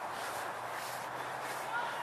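Steady background hiss with a faint low hum, and no distinct events.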